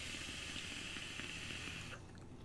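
An electronic cigarette being drawn on: a steady airy hiss of air pulled through the device during one long inhale, about two seconds, that stops abruptly.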